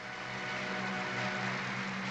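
Audience applauding: a steady, even clatter of many hands clapping, over a low steady hum from an old film soundtrack.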